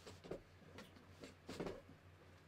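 Faint scattered rustles and light knocks of someone moving about and handling things, over a steady low electrical hum.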